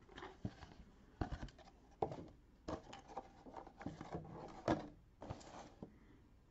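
Cardboard LEGO boxes and bagged plastic parts handled on a table: scattered light knocks and rustles, with one louder knock late on.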